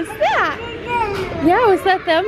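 Young children's voices calling out in high, rising-and-falling tones, over the steady background noise of a busy indoor play area.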